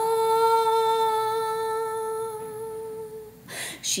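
A woman's voice holds one long, steady sung note for about three and a half seconds, then takes a short breath before the chant goes on.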